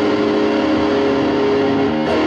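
Electric guitar holding a long sustained note that rings steadily, with the notes changing near the end.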